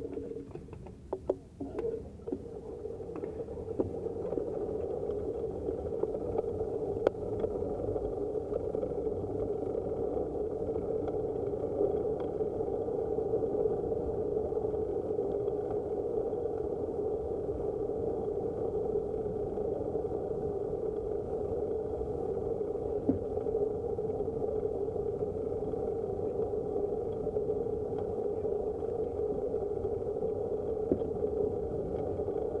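Track bicycle riding on a wooden velodrome track, heard from a camera mounted on the bike: a steady hum of tyres and fixed-gear drivetrain with rushing air under it. A few clicks and knocks in the first seconds before the riding sound builds and holds steady.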